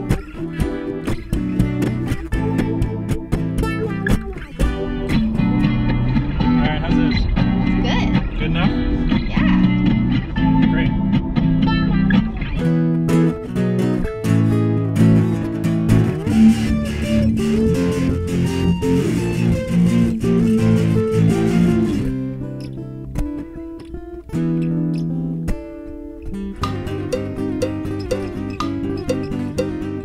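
Guitar loops: layered, repeating plucked guitar riffs built up on a loop station, in a string of short passages in different styles, changing about 12 and 22 seconds in, with a sparser stretch after the second change.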